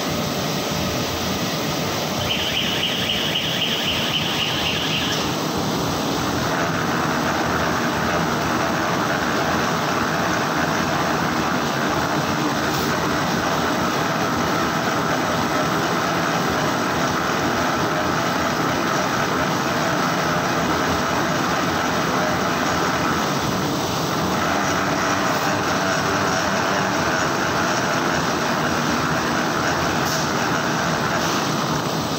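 Web-fed printing press running steadily, the drive and rollers making a continuous mechanical noise as the printed paper web feeds through. A higher hiss rides over it for about three seconds near the start, and the noise grows a little fuller about six seconds in.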